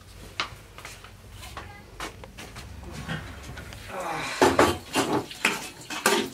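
Dishes and metal utensils clattering, with scattered knocks and clicks at first and a louder, busier clatter from about four seconds in.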